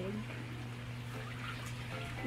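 Haier front-load washing machine draining its water: a steady low hum with faint trickling water.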